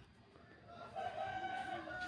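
One long drawn-out animal call, starting a little under a second in and held steady, its pitch sitting in the middle register with a few overtones.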